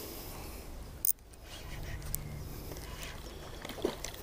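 Quiet outdoor background with a steady low rumble, a sharp click about a second in and a few faint ticks near the end.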